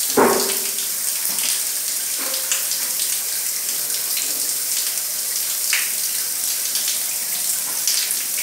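Water from a shower spraying and splashing onto a bathroom floor, a steady hiss. A short, loud call stands out just after the start.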